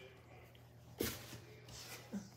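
A cardboard box being handled: a sudden scrape or knock about a second in, then faint rubbing and rustling.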